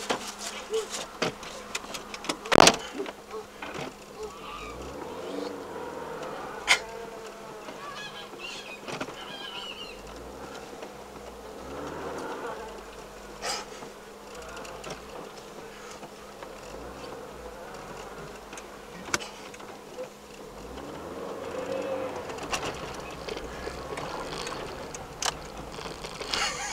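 Car engine heard from inside the cabin as the car pulls away from a standstill and drives slowly along a bumpy dirt track. The engine note rises twice as it accelerates, under a steady buzzing hum. There are occasional sharp knocks, the loudest about two and a half seconds in.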